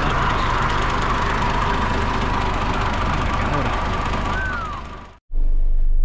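A large coach bus driving away with its engine running: a steady rumble and road noise that fades out about five seconds in. It is followed by a steady low hum inside the bus cabin.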